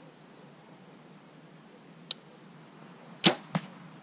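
A compound bow being shot: a brief faint tick about two seconds in, then the loud sharp crack of the string releasing the arrow near the end, followed about a third of a second later by a second, shorter crack.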